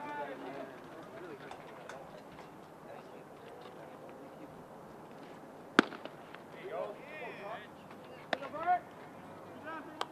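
One sharp, loud pop of a pitched baseball hitting the catcher's leather mitt, about six seconds in. Distant voices of players and spectators call out around it.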